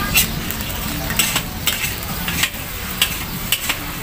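Metal tongs and a spatula clinking and scraping against a steel pan of pad thai, about half a dozen sharp clinks over a steady frying sizzle.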